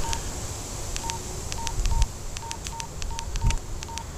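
Wouxun KG-UV3D handheld dual-band radio giving short, high keypad beeps, about two a second at uneven spacing, as its menu buttons are pressed, each beep with a faint click.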